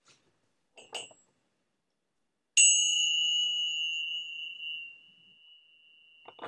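A small metal chime struck once, its high, bell-like ring fading away over about three seconds. A light knock sounds about a second before the strike.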